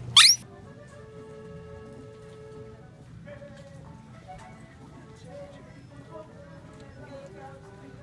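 A rubber squeeze toy squeezed once, giving a short, sharp squeak that rises steeply in pitch. After it, quieter background music with sustained notes plays from the store's sound system.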